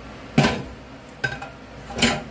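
Two sharp knocks about a second apart, the second with a brief ringing clink: hard containers being handled and set down on a hard surface.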